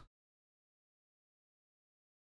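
Near silence: the audio drops out completely just after the last word of speech.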